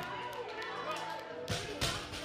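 Gym music and crowd voices, with two heavy thuds about a second and a half in: loaded bumper-plate barbells dropped to the floor after clean and jerks.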